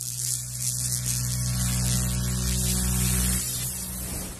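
Channel intro sound effect: a steady low electric-style hum under a hiss of static, fading away near the end.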